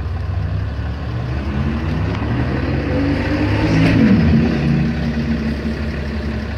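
A vehicle engine running with a steady low hum; an engine note rises in pitch and loudness to a peak about four seconds in, then drops away.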